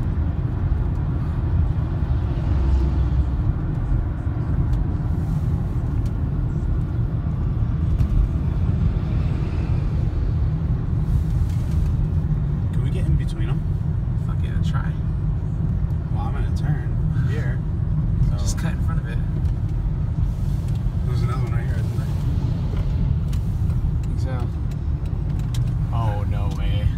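Steady low road and engine rumble heard inside the cabin of a moving car. Faint voices come in over it from about halfway through.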